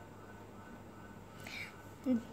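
Quiet room tone with one faint breathy sound about a second and a half in.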